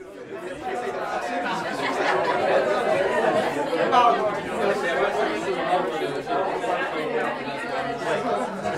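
Many people talking at once in a room: a steady hum of overlapping conversation with no single voice standing out, fading in over the first second or two.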